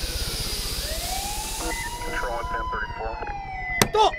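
Siren wailing in a slow sweep, its pitch falling, rising again and then falling, over a high hiss that dies away about two-thirds of the way through. A sharp click comes just before the end.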